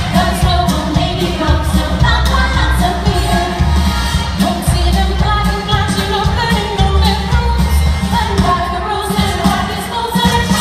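A woman singing into a microphone over loud amplified music with a strong, pulsing bass line, played through a PA system.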